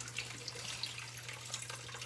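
Water trickling and splashing out of a plastic bag as it is tipped into aquarium water to release small fish, with a low steady hum underneath.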